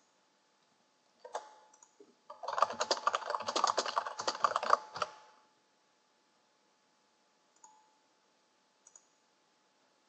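Typing on a computer keyboard: a quick run of key presses lasting about three seconds, with a single click shortly before it and two faint clicks near the end.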